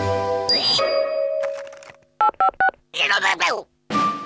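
Cartoon soundtrack: a music cue ends in a quick whoosh and a short held note. Three quick two-tone electronic beeps follow, then a brief cartoon character's vocal noise.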